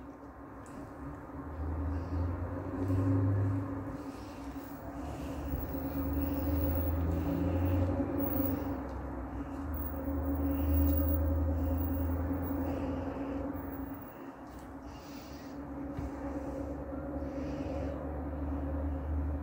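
A low, steady mechanical hum that swells and fades over several seconds, with faint soft scraping sounds above it.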